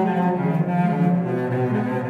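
Cello playing long bowed notes low in its range, stepping down to a lower note about one and a half seconds in, with grand piano accompaniment.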